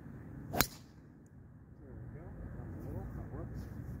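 Golf driver striking a ball off the tee: one sharp click about half a second in, followed by faint background.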